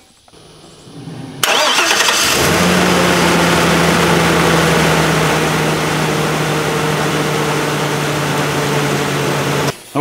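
Chevrolet Silverado 2500 pickup engine cranked on a portable jump starter's power, then catching after about a second and settling into a steady idle. The engine sound cuts off abruptly just before the end.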